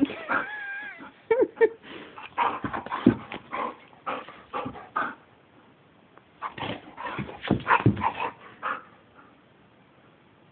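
A dog vocalizing in short bursts, opening with a wavering whine, with a pause of about a second midway.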